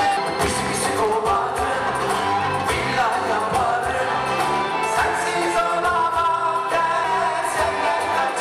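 Turkish pop-rock band performing live: male voices singing over electric bass, keyboards and a steady beat.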